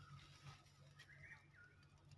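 Near silence: a few faint, short bird chirps, two of them about a second in, over a low steady hum.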